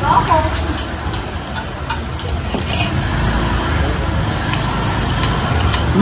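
Steady low rumble of motorbike traffic and street-market background, a little stronger in the second half, with a few light clicks of a metal spoon against a ceramic bowl.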